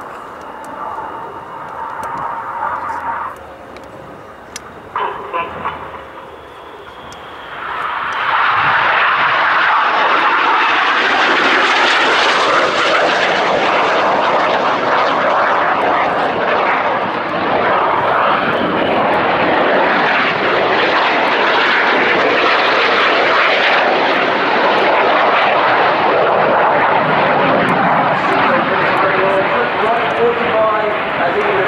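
Red Arrows BAE Hawk T1 jets' turbofan engines heard in a low-level display pass: after a quieter stretch, the jet roar swells sharply about eight seconds in and stays loud, reaching its highest pitch a few seconds later.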